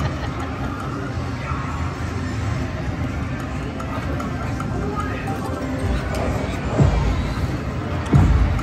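Ultimate Fire Link Explosion slot machine playing its game music and reel-spin sounds through back-to-back spins, with a deep thud about seven seconds in.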